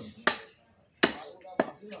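Butcher's cleaver chopping beef on a wooden log chopping block: three sharp chops, the first about a quarter second in, then two more close together about a second in.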